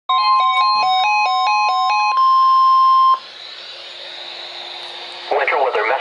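NOAA Weather Radio alert: the steady 1050 Hz warning alarm tone sounds through a bank of weather receivers, with a receiver's stepped two-note alarm beeps alternating over it for about two seconds. The tone cuts off about three seconds in, leaving a quieter hiss, and the synthesized broadcast voice starts reading a winter storm watch near the end.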